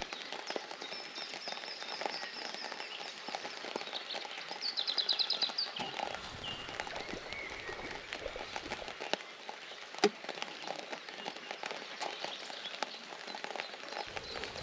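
Steady rain pattering on a pond's surface, with a songbird singing over it: a high call early on and a quick trill about five seconds in. A single sharp click about ten seconds in.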